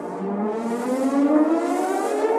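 Synthesizer riser in a hip-hop/R&B instrumental beat: the sustained chord pad slides steadily upward in pitch while a hiss swells above it, building toward the drop.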